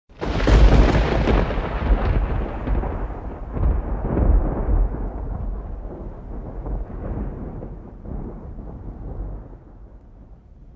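Thunder: a sudden loud clap that rolls on in a deep rumble, swelling a few times and then slowly dying away.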